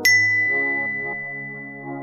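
A single bright bell ding sound effect, struck once right at the start and ringing on as it slowly fades, over soft background music with sustained chords.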